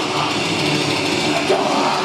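Death metal band playing live at full volume: distorted guitars and drums, with a shouted vocal into the microphone.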